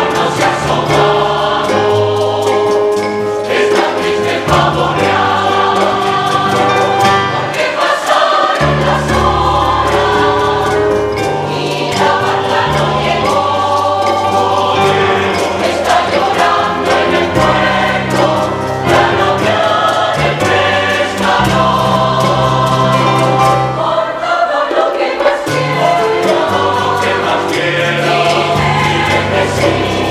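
Mixed choir of men's and women's voices singing a bolero in Spanish, with a plucked-string accompaniment keeping a steady rhythm.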